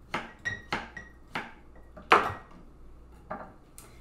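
Steel knife knocking against a hot glass quart mason jar as peach chunks are pushed and dropped in: a series of sharp clinks, the loudest about two seconds in, some leaving a brief glassy ring.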